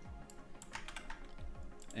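Several scattered clicks of a computer keyboard, a few separate keystrokes, over quiet background music.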